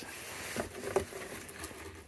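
Light handling noises of packaging: a plastic sleeve and cardboard box being rustled and shuffled by hand, with one sharp tap about a second in.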